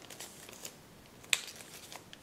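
Folded kraft paper rustling and crinkling in the hands as an origami dolphin is shaped, with one sharp paper crackle a little past halfway through.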